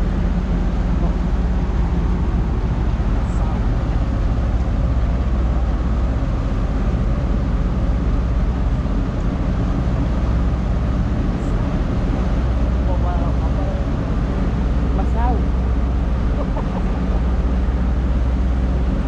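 Steady low rumble of ship engines, a constant drone that holds the same pitch throughout.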